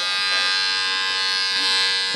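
Electric hair clippers running with a steady buzz as they are worked through a man's short hair.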